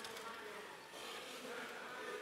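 Faint indoor arena ambience during a robotics match: a steady hum with faint crowd noise behind it.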